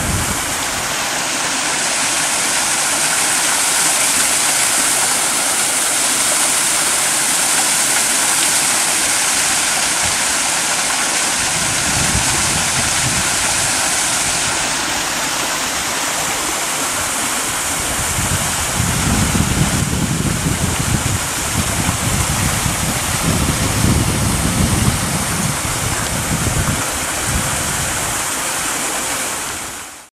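Steady rushing hiss of water pouring from a culvert outfall into a canal. Low wind rumbles on the microphone come in about halfway through and again through much of the last third.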